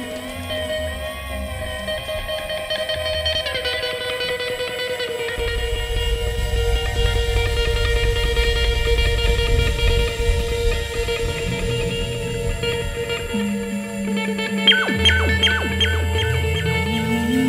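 Live electronic jam-band music in a drumless, ambient passage: long sustained electric guitar and synthesizer tones over a low bass. Near the end comes a quick run of short picked notes.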